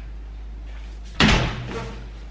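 A single sudden loud thump about a second in, with a short low rumbling tail, over a steady low hum.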